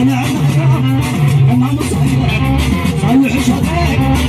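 Live Tigrinya music played loud through a PA system: a man singing over amplified plucked-string accompaniment.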